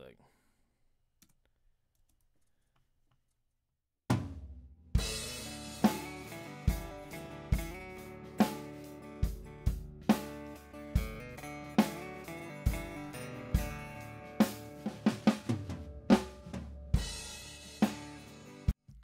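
Multitrack drum-kit recording with a DI acoustic guitar played back from Pro Tools, time-stretched by Elastic Audio from its recorded 87 BPM down to 70 BPM. After about four seconds of near silence the playback starts: kick and snare hits fall in a slow steady beat, a little more than one a second, with cymbals and guitar between them.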